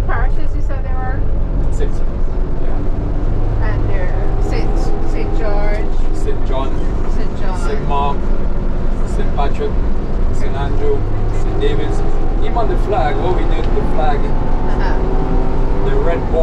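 Minibus engine and road noise heard from inside the cabin as it drives along, a steady low rumble, with people's voices talking over it throughout.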